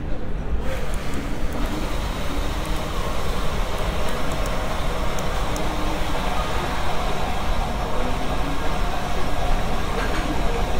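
Airport terminal ambience: a constant low rumble under an even hiss, with faint, indistinct voices in the background.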